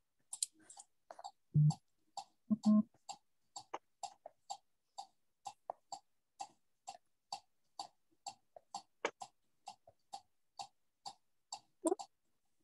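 Steady, regular ticking, about three light ticks a second, with two short, louder low thumps about one and a half and two and a half seconds in.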